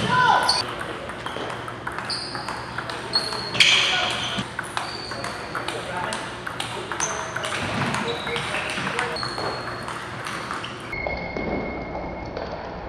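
Table tennis balls clicking off paddles and tables in irregular rallies, many short ringing pings, with the clicks of other tables' play mixed in and voices in the hall behind.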